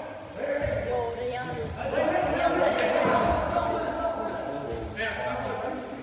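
Indistinct players' voices calling across a large indoor soccer hall, with a few dull thuds of the ball being kicked and knocked about on the turf.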